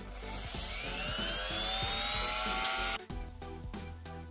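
Handheld rotary tool (Dremel-type) with a sanding bit spinning up, its whine rising in pitch, then cutting off suddenly about three seconds in.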